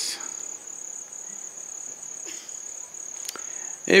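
A steady high-pitched trill or whine holding one pitch through a pause in speech, with a soft breath a little after two seconds and a small click shortly before speech resumes.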